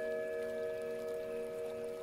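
Soft background music of several long, steady held tones, one of them entering just before and ringing on unchanged.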